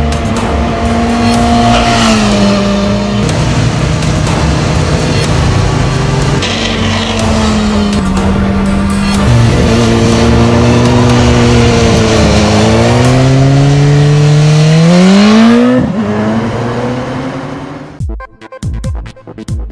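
BMW S 1000 R / S 1000 RR four-cylinder sportbike engine running hard at high revs, its pitch holding and then stepping as the rider shifts and rolls off. Near the end it climbs steeply under hard acceleration, then cuts off and fades.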